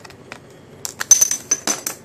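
A play coin dropping onto a hard desk and clattering. There are a string of quick clicks starting a little under a second in, with a high ring under them for most of a second.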